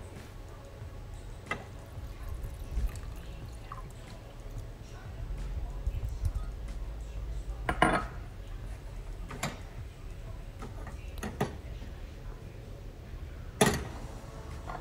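Saucepans being handled on a gas stovetop: a handful of sharp metal clinks, the loudest about eight seconds in and another near the end, as water is added to a saucepan of rinsed black beans.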